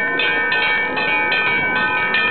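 A bell struck over and over, about three to four strikes a second, its ringing tones carrying on steadily between strikes.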